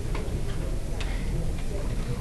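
A few faint, irregularly spaced clicks over a steady low room hum.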